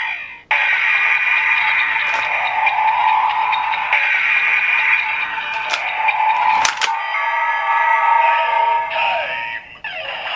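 Electronic standby music from a Ziku-Driver toy transformation belt, played through its built-in speaker. It is broken by a few sharp plastic clicks as its buttons are pressed and the belt is worked.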